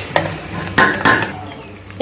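A utensil stirring a thick curry in a metal pot, scraping and clinking against the pot several times, loudest a little under a second in.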